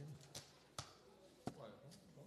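Three short, faint knocks at a conference desk in an otherwise quiet room, with low murmured voices in between: papers and objects being handled near the desk microphone.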